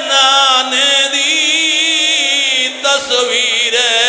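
A man's voice chanting a lament in a melodic, sung recitation style. He holds one long wavering note for nearly three seconds, breaks briefly, then starts a new phrase.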